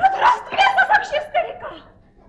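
A woman laughing on stage in a quick run of short bursts, a few a second, dying away near the end.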